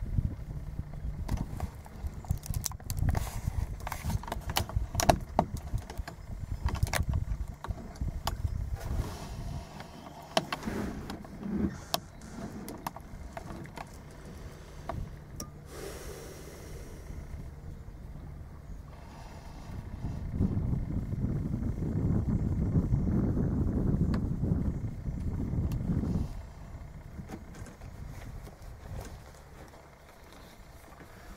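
Kayak moving on a lake: water lapping and paddling noise, with repeated knocks and clicks from the paddle and the hand-held camera, and a louder rushing stretch of several seconds about two-thirds of the way in.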